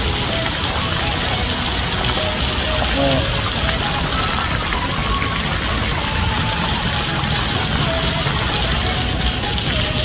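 Steady hissing and splashing of a large fountain's many water jets spraying and falling into its pool, with faint voices and music mixed in the background.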